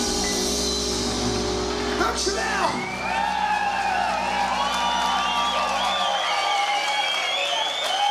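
A live blues band's final held chord on electric guitar and Hammond organ ringing out and stopping about six seconds in, while the audience cheers, whoops and claps from about two seconds in.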